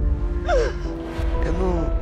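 A woman crying, with a gasping, falling sob about half a second in and a short broken word later, over soft background music with long held notes and a low rumble.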